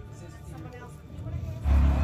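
Movie trailer soundtrack over cinema speakers: quiet at first, then a loud deep rumble comes in abruptly about one and a half seconds in, leading into film dialogue.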